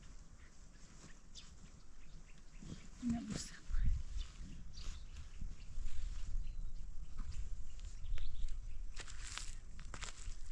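Cloth rustling and crackling as a blanket is lifted and handled, with a brief voice sound about three seconds in and a low rumble from about four seconds on.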